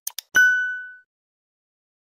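End-screen sound effect: two quick clicks, then a single ding that rings and fades out within about a second.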